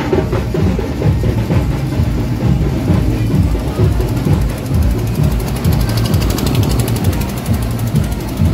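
Loud, drum-heavy procession music with a pounding low beat. A fast, bright rattling rhythm rides over it in the second half.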